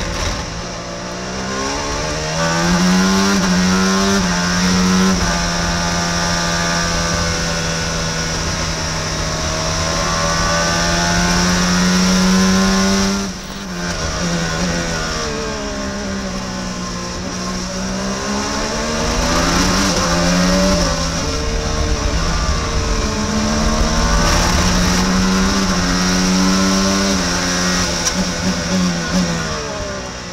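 Onboard sound of an IndyCar's Honda twin-turbo V6 at racing speed, the revs climbing and falling with each gear change. It holds a long steady full-throttle note, drops off suddenly about 13 seconds in as the throttle is lifted, then sweeps down and climbs again through the gears.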